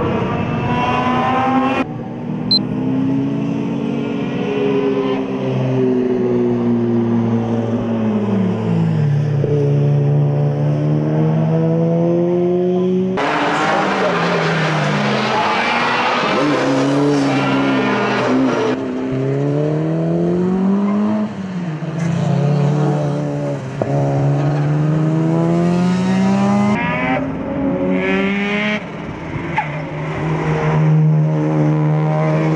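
Mazda FD3S RX-7's twin-rotor rotary engine on a hard lap, its pitch climbing under acceleration and dropping under braking, over and over. It breaks off suddenly a few times, and a louder rushing noise comes in about halfway through as the car passes close.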